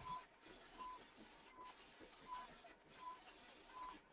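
Direct-to-garment printer faintly running through a large print, with a short high tone repeating about every three-quarters of a second.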